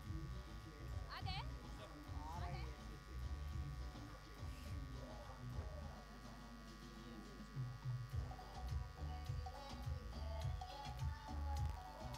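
Faint ground ambience: muffled music from the ground's sound system with low bass thumps, faint distant voices in the first few seconds, and a steady electrical buzz.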